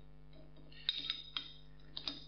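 Steel block-plane blade clinking against the plane's metal body and brass adjuster as it is laid onto the bed and seated: four light metallic clinks over the second half, over a faint steady hum.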